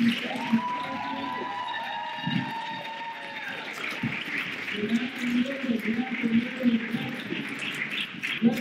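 Indistinct speech through a room's microphone with poor audio, with a wavering tone that sounds for about two seconds starting about a second in.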